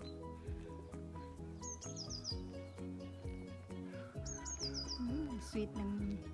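Background music with held notes over a steady bass. Twice, about two and a half seconds apart, a short run of four or five high, falling bird chirps.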